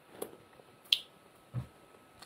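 A few faint, short clicks, the sharpest about a second in, and a soft low thump near the end.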